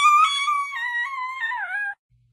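Small dog howling: one long, high, wavering note that dips in pitch near the end and cuts off suddenly.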